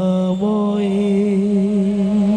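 A woman singing one long held note in Bengali kirtan style, the vowel colour shifting about half a second in.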